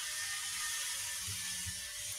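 Steady recording hiss from the microphone in a pause between speech, with a few faint low knocks in the second half.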